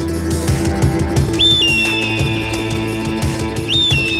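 A small hand-held whistle blown twice over a backing track with a steady beat: each call starts with a quick high note, then a long tone that glides slowly down. The first call comes about a second and a half in, the second near the end.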